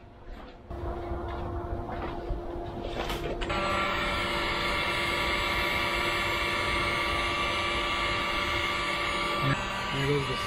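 Handheld electric heat gun running, its fan motor giving a steady whirr with a whine, aimed at spliced wires to shrink the heat-shrink tubing. It steps up louder about three and a half seconds in and cuts off shortly before the end.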